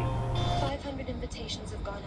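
Background music ends abruptly less than a second in, giving way to a steady low rumble with faint, indistinct speech from a film soundtrack.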